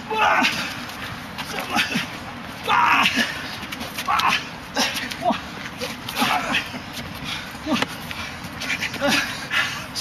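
Two men sparring hand to hand, breathing hard with grunts and short vocal bursts of effort, out of breath from the exertion. Scattered sharp slaps come from arms and hands striking.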